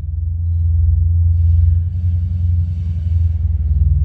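A steady low rumble with a fine, fast pulse to it, growing louder about half a second in.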